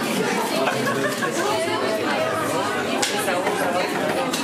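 Crowd chatter: many people talking at once, no single voice standing out.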